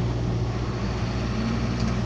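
Engine and road noise inside the cab of a large vehicle driving along, a steady low hum.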